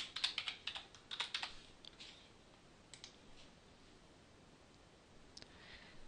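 Faint computer keyboard typing: a quick run of keystrokes in the first second and a half, then a few single clicks spaced out over the rest.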